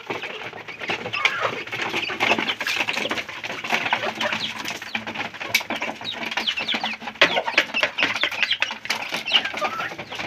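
A flock of young chickens clucking and peeping while feeding, with a steady patter of quick beak pecks on the feed tray and concrete floor.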